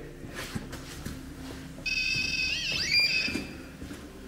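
REM pod's electronic alarm tone sounding for about two seconds, starting about halfway in, with a brief wobble in pitch, as a hand reaches in to touch the device.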